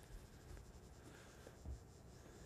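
Near silence: room tone, with one faint low thump near the end.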